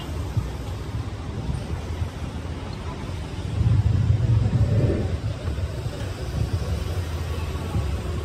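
Street traffic rumbling low and steady, swelling louder for about two seconds a little before the middle.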